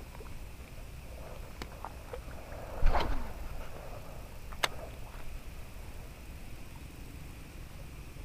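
Handling of a baitcasting rod and reel over a faint background: a brief rustling swish about three seconds in, then a single sharp click from the reel about a second and a half later.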